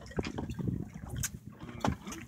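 Water sloshing and slapping against a boat's hull, with a few sharp knocks, the loudest just before the end.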